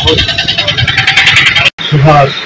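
A man talking outdoors over loud, steady background noise. The sound cuts off abruptly near the end.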